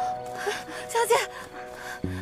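Drama score with held sustained notes under brief urgent calling voices, one short outburst about a second in.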